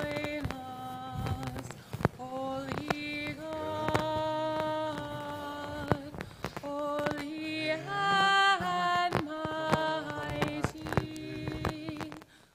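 Unaccompanied Byzantine liturgical chant, sung as long held notes that step up and down in pitch. Scattered sharp clicks run through it.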